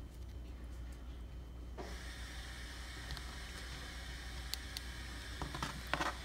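Faint clicks and taps of a plastic action figure being handled, a few spread out and a small cluster near the end, over a steady low hum.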